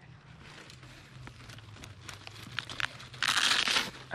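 Dry, shredded palm-trunk pith and fibres crackling and rustling under a hand picking through them, with scattered small crackles and then a louder crunching rustle lasting under a second near the end.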